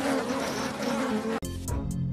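A crowd of honeybees at a hive entrance buzzing in a dense, steady hum. About one and a half seconds in, the buzzing stops and music begins.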